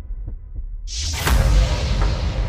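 Cinematic sound-effect bed: a deep low rumble with faint repeated low strokes, then about a second in a loud rushing noise starts suddenly and carries on.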